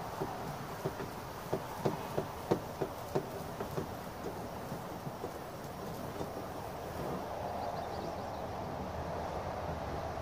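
A plastic garden pump sprayer being handled: a run of sharp plastic clicks and knocks, roughly two a second, through the first four seconds, then only a faint steady background.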